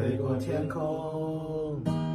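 Acoustic guitar being strummed while a man's voice holds a long sung note that bends downward near the end.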